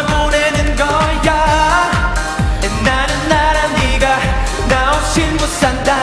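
K-pop dance track with male voices singing over a steady beat of deep bass-drum hits that fall in pitch, about two a second.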